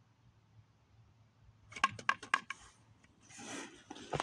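Handling noise after the singing stops: a quick run of about five sharp clicks a little under two seconds in, then a brief brushing rustle near the end.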